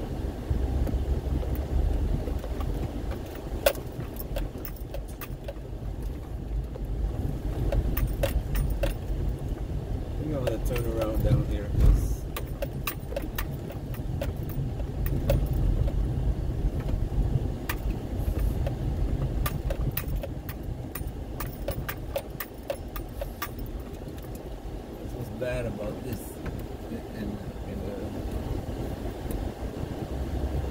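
Car driving over a rough, rutted dirt road, heard from inside the cabin: a steady low rumble with frequent clicks and rattles as it jolts over the ruts.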